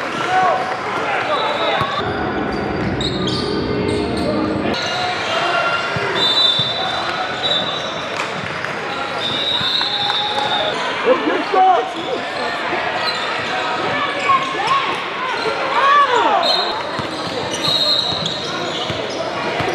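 Live sound of an indoor basketball game. Sneakers squeak on the hardwood court in several short sliding chirps, and a basketball bounces, under a constant murmur of voices in a large, echoing gym.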